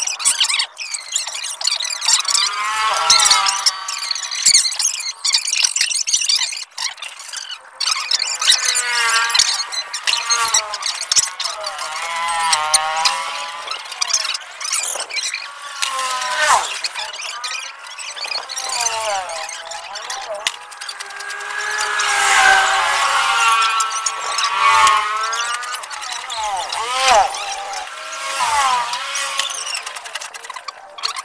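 Steel drill pipe of a hand-turned well boring rig squealing as it is twisted round in the borehole: repeated wavering squeals that rise and fall in pitch, loudest about three quarters of the way through.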